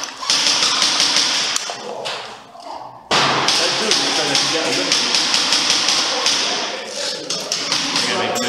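Airsoft guns firing a rapid string of sharp shots, several a second, in a large hall. The firing drops away about one and a half seconds in and picks up again about three seconds in.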